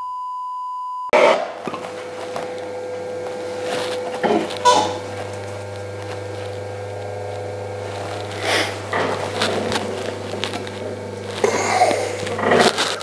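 A steady single-pitch test-card beep for about a second, cut off sharply. Then an electric potter's wheel runs with a steady buzzing hum, with a few short knocks and handling sounds around it.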